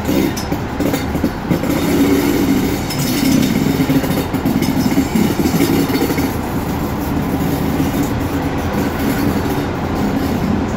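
A heritage train running round a curve, heard from an open carriage window just behind a Class 44 diesel locomotive: a steady, loud rumble of wheels on rail that grows a little louder about two seconds in.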